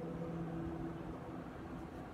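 Steady low room hum with faint hiss. A few faint steady tones in the hum fade out about a second in.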